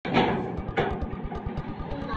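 Ribbed sheet-metal gate rattled by its handles, with two short metallic clashes about two-thirds of a second apart.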